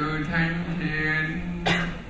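A man's voice chanting a liturgical prayer on a near-steady reciting tone, cut across about one and a half seconds in by a single sharp cough.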